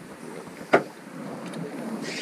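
Steady wind and sea noise on an open boat deck, with one sharp knock about three-quarters of a second in.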